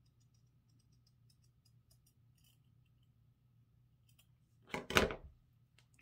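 Scissors making a run of faint, quick snips, trimming the edge of a cross-stitch fabric piece down to shape.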